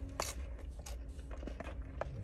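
A person eating with a fork from a plastic takeout container: quiet chewing and a few sharp clicks of the fork against the container, over a low steady hum.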